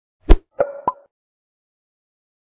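Short sound-effect sting for an animated logo: one loud low thud, then two quick, lighter pitched taps, all within the first second.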